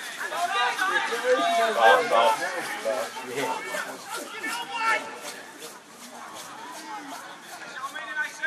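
Indistinct voices talking and calling out at pitch side, loudest in the first few seconds and then quieter.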